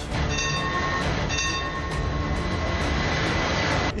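A tram running along its rails in a steady rumble, with two short high-pitched tones about half a second and a second and a half in.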